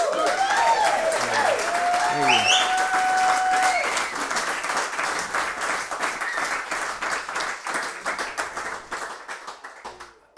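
Audience applause with whoops and cheering, breaking out suddenly right after the song ends. The clapping thins and fades toward the end.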